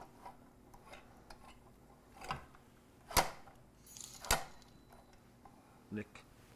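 A few short, sharp knocks and clicks as a countertop lever-press french fry cutter is handled, three louder ones about a second apart.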